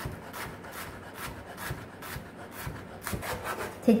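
Chef's knife julienning a nectarine on a wooden cutting board: a steady run of short knife strokes, about three a second, each slicing through the fruit and tapping the board.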